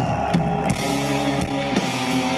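Live rock band playing: held electric guitar chords over a bass that comes in right at the start, with drum hits.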